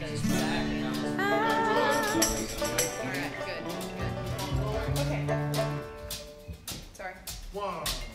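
Acoustic bluegrass band playing the opening of a song: acoustic guitars under held notes and a wavering melody line. The music thins to separate guitar strums in the last couple of seconds.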